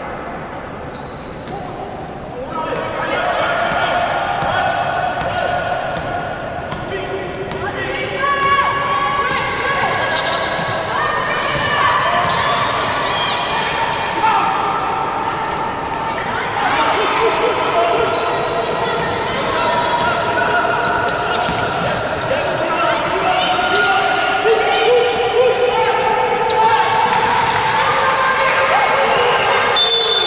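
A basketball dribbled and bouncing on a hardwood court, echoing in a large hall, with players' and coaches' voices calling out during play.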